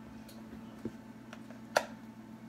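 A butter knife tapping and scraping against bread slices and a plastic tub of spread while butter is spread: a few light, scattered ticks, the sharpest near the end.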